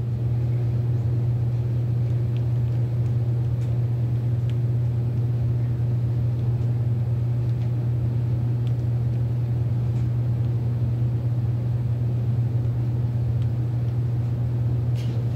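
Steady low-pitched machine hum, even in level throughout, with a few faint light ticks.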